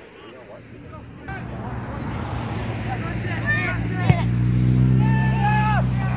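A steady engine hum comes in about a second in and grows louder, with players shouting on the pitch over it. There is one sharp knock of a soccer ball being kicked about four seconds in.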